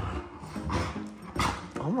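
Dogs vocalizing in rough play, short irregular play noises from a husky and golden retriever puppies wrestling together.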